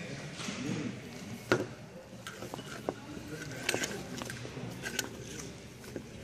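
Items being handled in a pile of used clothing and leather belts: a few sharp clicks and knocks, the loudest about one and a half seconds in, over a faint murmur of voices.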